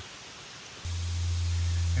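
Steady outdoor background hiss; just under a second in, a louder hiss with a steady low hum cuts in suddenly.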